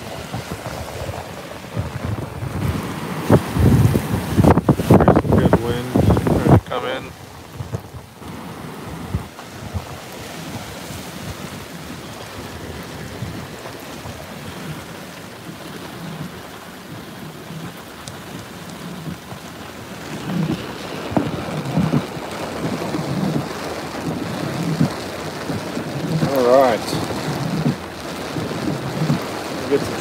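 Tropical-storm wind gusting hard against the microphone, with rain. Heavy buffeting gusts come in the first several seconds, the wind then eases to a steadier rush, and gusts build again near the end.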